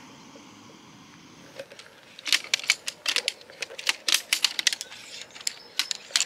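A faint steady hiss from a gas camping stove under a pot of eggs. About two seconds in, the pole frame of a folding camp chair starts clicking and clacking in quick irregular bursts as it is unfolded and its poles snap into place.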